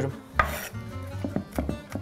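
A knife chopping and crushing dried ball-thyme buds on a wooden cutting board: a few short, sharp strikes, one early and a quick cluster in the second half. Background music with a steady low beat plays underneath.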